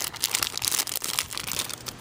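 Clear plastic packaging crinkling and crackling as it is handled, in quick irregular rustles that are loudest in the first second and thin out toward the end.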